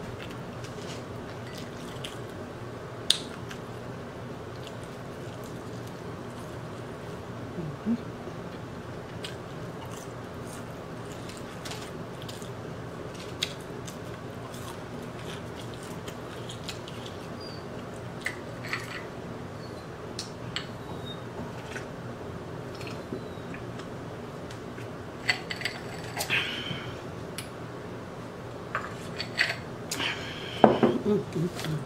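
Close-up eating sounds of a person chewing and biting crispy fried chicken: scattered wet clicks and crunches over a steady low hum, thickening into a cluster of sharper crunches near the end.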